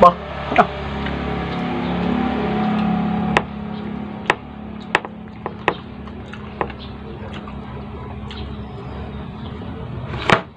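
Close-up eating sounds: chewing with sharp, irregular mouth clicks and smacks, roughly one a second, while eating braised pork ribs by hand. A steady low drone fills the first three seconds and stops suddenly.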